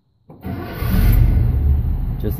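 1970 International Travelette engine, warm and running on a converted electronic ignition, catching right away about a third of a second in and settling into a steady, smooth idle near 600 rpm.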